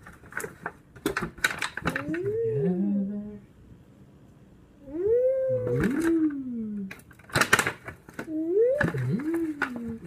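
A voice humming in three long, rising-and-falling "mm" glides, with sharp crackling and rustling in between as raw beets and their leafy tops are handled over a foil roasting pan.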